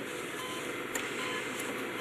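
Hospital patient monitor beeping: short, even beeps about every 0.8 seconds over a steady hiss.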